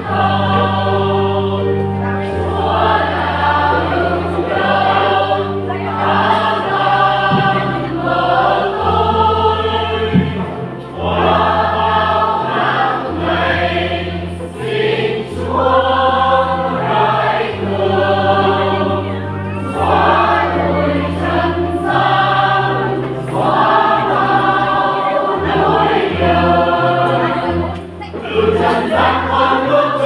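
A choir singing a hymn in phrases, over an instrumental accompaniment that holds steady low bass notes beneath each phrase.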